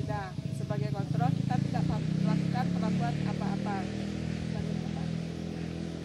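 A woman speaking for the first few seconds over a steady low engine drone that runs throughout, like a motor running nearby.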